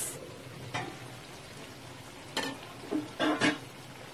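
Shrimp in garlic butter sizzling steadily in a wok, just uncovered after simmering. There is a short hiss right at the start and a few brief clatters.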